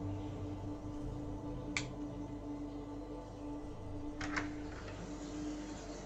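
Low, steady droning hum, with one sharp click about two seconds in and a quick double click a little past four seconds.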